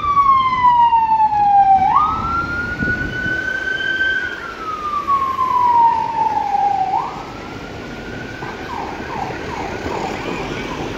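Emergency vehicle siren in a slow wail over road traffic. The pitch jumps up quickly, holds, then slides down over a few seconds, twice, and the siren grows fainter after about seven seconds.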